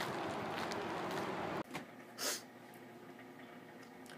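Steady outdoor background hiss that cuts off abruptly about a second and a half in, giving way to a quiet room with a faint steady hum and one short breath close to the microphone.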